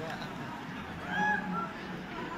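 Scattered distant shouts and calls from football spectators and players, with a high drawn-out call about a second in.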